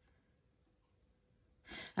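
Near silence, then a short intake of breath near the end.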